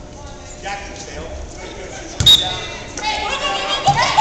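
A single loud smack of a basketball on a hardwood gym floor about two seconds in, with a low thud and a brief high ring, over the chatter of voices in a gymnasium. The voices grow louder near the end.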